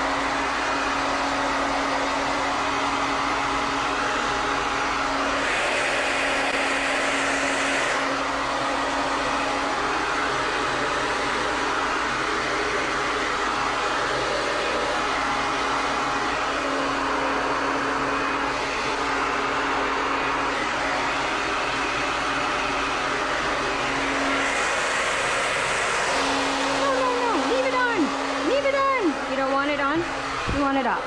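Handheld hair dryer blowing steadily at close range while drying a small dog, its sound brightening briefly twice as it is moved about.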